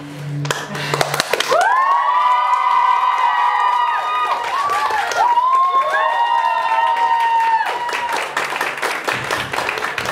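Piano music cutting off about a second in, followed by an audience clapping and cheering, with many voices whooping together for several seconds before the clapping carries on alone.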